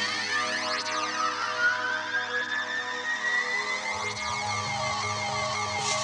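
Electronic background music: held synthesizer chords with one tone slowly gliding upward in pitch.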